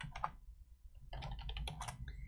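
Quiet typing on a computer keyboard: a few keystrokes, a pause of under a second, then a quick run of keystrokes.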